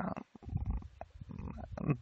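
A man's soft, low hesitation sounds and breathing between phrases, much quieter than his speech, with a single faint click about a second in.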